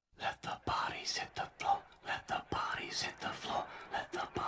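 A person whispering in short broken phrases, with breathy bursts, starting just after a moment of silence.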